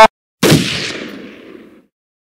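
Explosion sound effect: one sudden blast about half a second in, dying away over about a second and a half.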